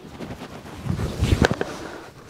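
Rustling and shuffling of a person moving and kneeling down on grass, coat fabric and feet rubbing, with a low rumbling bump about a second in.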